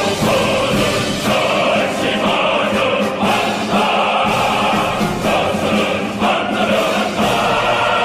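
A large male choir singing the song's refrain in sustained, held notes over full orchestral accompaniment.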